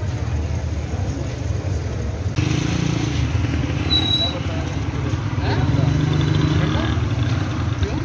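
Street traffic noise: a steady low rumble of vehicle engines, with a short high-pitched beep about four seconds in.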